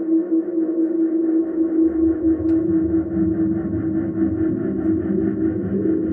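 Sustained, electronically processed drone holding one steady pitch with a shimmering upper layer. A rough, low rumbling layer comes in about a second and a half in and thickens the sound.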